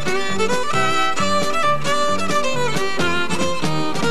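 Fiddle playing a quick instrumental tune, notes changing rapidly, over a band backing with a bass alternating between two low notes and a steady beat.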